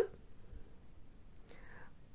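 Quiet pause in the narration: low steady background hiss, with a soft intake of breath near the end.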